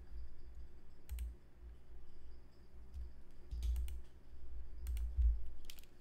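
Scattered clicks from a computer keyboard and mouse: a single click about a second in, then short clusters of clicks in the second half, each set over a dull low thump.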